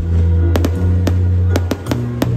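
Background music with a steady bass line, overlaid by the sharp bangs and crackles of aerial fireworks bursting, about half a dozen at irregular intervals.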